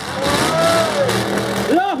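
A car engine running at a steady low pitch under crowd noise, with one long drawn-out voice call rising and falling in pitch over it.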